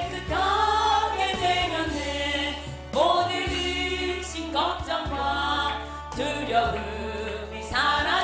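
A group singing a Korean hymn together over steady low instrumental accompaniment. A new sung phrase begins about three seconds in.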